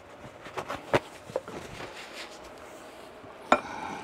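Light knocks and clatter of kitchen things being handled, with a sharper knock about three and a half seconds in. After it comes the quieter sound of a wooden spoon working through a glass bowl of pea salad.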